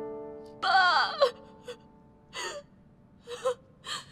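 A woman lets out a short, loud wailing cry just under a second in, then catches her breath in several gasping sobs. Soft, sad piano music fades out beneath her.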